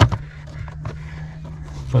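Faint clicks and rustles of a hand handling a plastic wiring connector and the wiring loom behind a dashboard, over a steady low hum.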